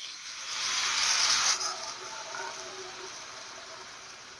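Beer poured from a can into a hot frying pan of browned beef short ribs, the liquid hissing and sizzling loudly as it hits the pan. The hiss builds for about a second and a half, then drops off sharply to a quieter, steady sizzle.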